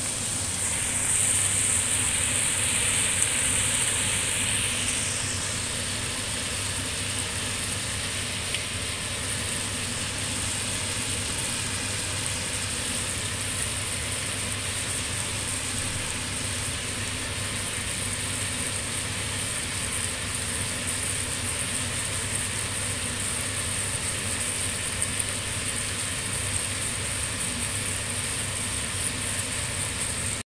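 Duck meat and celery sizzling in a hot wok: a steady hiss, louder for the first few seconds, over a low steady hum.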